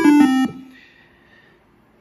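Nord Stage 3 synth engine playing a classic square wave from a single oscillator: a few short notes stepping down in pitch, which stop about half a second in and fade away.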